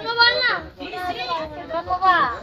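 A child talking in short phrases.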